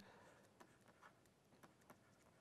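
Near silence with a few faint taps of a stylus writing on a tablet screen.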